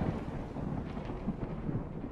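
A thunder-like rumble dying away after a sudden boom, fading slowly.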